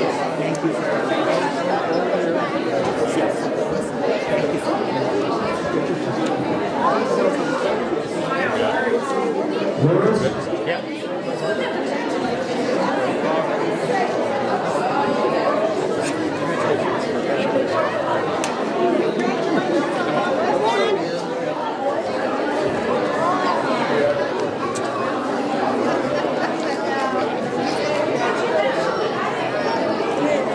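Many people talking at once in a large hall: a steady hubbub of overlapping conversation with no single voice standing out.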